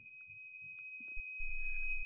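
A steady high-pitched electronic whine, one unwavering tone, on a video-call audio line, with a few faint clicks.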